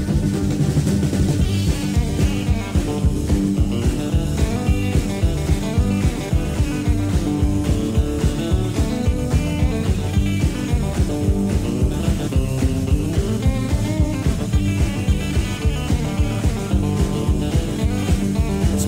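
Rockabilly band playing a passage with electric guitar, bass and drum kit over a steady, driving beat.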